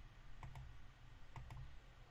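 Faint computer mouse button clicks: two pairs of quick clicks about a second apart.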